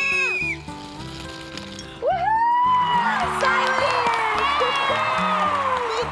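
Background music with children shrieking and cheering for about four seconds, after a short lull. It opens with the tail of a steady whistle blast that cuts off about half a second in.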